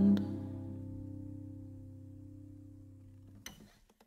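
The final chord of an acoustic folk song on string instruments, ringing out and slowly fading away. A short faint knock or string noise comes about three and a half seconds in, as the ring dies.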